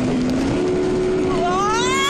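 Wind and spray rushing past a towed banana boat over the steady drone of the speedboat's engine, which steps up in pitch about half a second in. Near the end a rider's high scream starts and rises.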